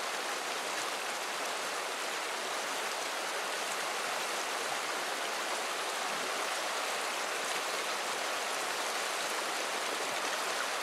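Shallow, fast upland river running over and around rocks in pocket water: a steady rush of broken water with no breaks or single events.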